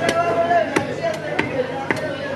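Meat cleaver chopping through a goat leg on a wooden log chopping block: about four sharp strokes, roughly one every half second.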